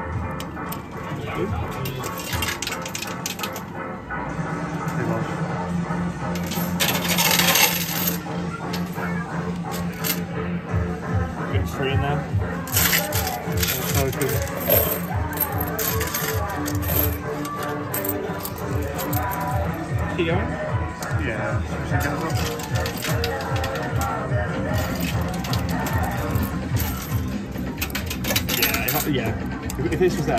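2p coins clinking and clattering in an arcade coin pusher, many small metallic clicks coming one after another, over arcade background music.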